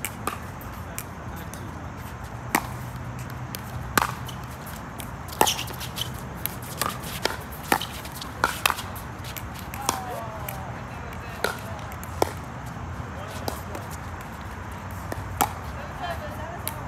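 Pickleball paddles hitting the plastic ball in a doubles rally: a series of sharp pops at irregular spacing, coming quickest in the middle.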